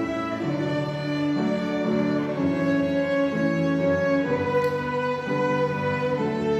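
High school string ensemble of violins, cellos and double bass playing, the bowed chords held and moving to a new chord about every second.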